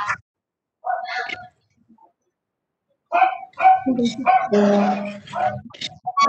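A dog barking, with indistinct voices in the second half.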